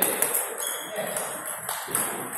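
Table tennis ball ticking sharply a handful of times against the bat, the table or the floor, with voices murmuring in the reverberant sports hall behind it.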